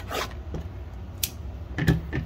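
Cardboard blaster box being torn open: a short ripping rasp at the start, then a couple of brief sharp scratchy sounds.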